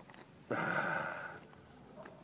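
A person lets out a short breathy exclamation about half a second in, over crickets chirping in a steady pulsing rhythm.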